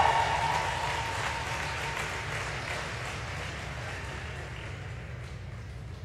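Applause from a small audience, dying away steadily over several seconds.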